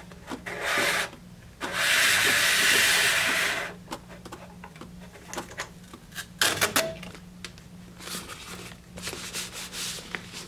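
Water-activated paper tape being pulled out of a manual gummed-tape dispenser: a loud dragging scrape of about two seconds as the strip is drawn over the wetting brush, then a few sharp clicks and more rubbing as the strip is torn off and smoothed by hand onto a cardboard box.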